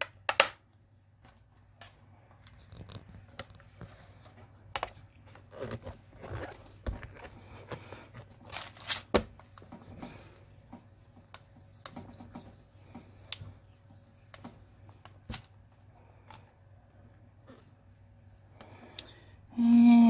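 Quiet handling sounds from a stamp positioning platform and card stock: scattered light clicks, taps and paper rustles as the clear hinged lid is closed, pressed and lifted, with a louder knock about nine seconds in.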